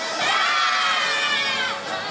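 Many voices shouting together in unison, a drawn-out group call that swoops up and then drops away near the end.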